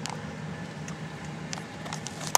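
Car engine running, heard from inside the cabin as a steady low hum, with a few faint clicks.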